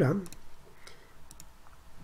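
Two computer mouse clicks about two-thirds of a second apart.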